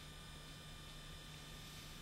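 Near silence: a faint steady low hum under even hiss, with no distinct event.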